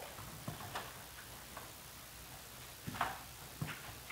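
A few faint, scattered knocks and clicks of a plastic five-gallon bucket being handled in its stand, the loudest about three seconds in.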